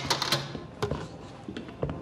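A handful of light, irregular clicks and taps, as of things being handled and bumped while someone moves about.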